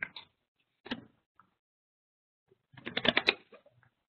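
Computer keyboard and mouse clicks: a single click about a second in, then a quick run of clicks a little before the three-second mark.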